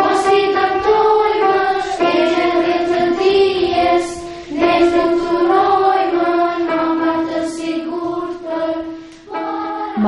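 Children's choir singing a song as one melody line, held notes in phrases of a few seconds.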